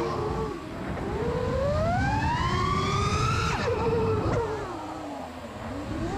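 Freestyle FPV quadcopter's brushless motors whining under throttle: the pitch climbs steadily for about three seconds as the quad punches up, drops sharply, runs low and quieter for a moment, then rises again near the end.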